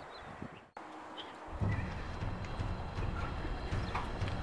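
Horse hooves clip-clopping in a steady rhythm, starting about a second and a half in.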